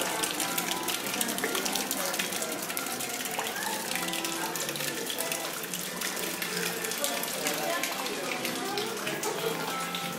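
Small garden fountain's thin jet of water falling back and splashing steadily into a shallow mosaic-tiled basin.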